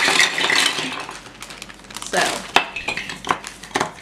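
A flimsy plastic bag crinkling as it is pulled open, then hard plastic toy building blocks clattering against each other as they are tipped out onto a table near the end.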